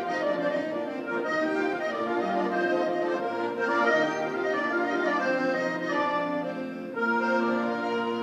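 Russian garmoshka, a 25-by-25 button accordion, playing an instrumental introduction: a melody on the right-hand buttons over sustained bass and chord notes. The level dips briefly near the end before a new phrase.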